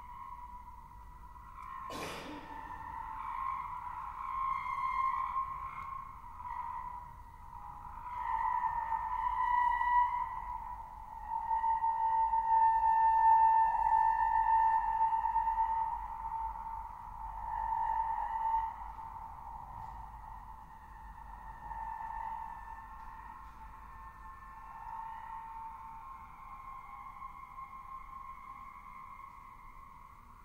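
Contemporary chamber ensemble holding high, nearly pure sustained tones that swell and fade in slow waves, with one sharp struck attack about two seconds in.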